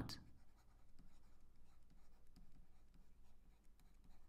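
Faint, irregular scratching strokes of a stylus handwriting on a tablet.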